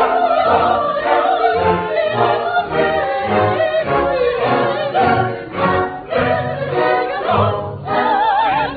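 Mixed opera chorus and soloists, men and women, singing a full-voiced ensemble passage together.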